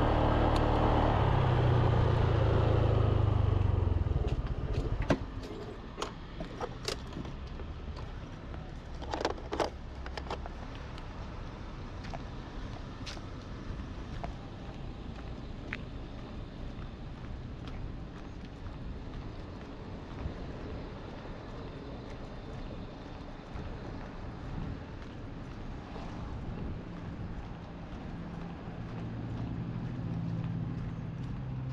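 A motorbike engine running that stops about five seconds in. A quieter stretch follows with a few scattered clicks and knocks, and an engine is heard running again near the end.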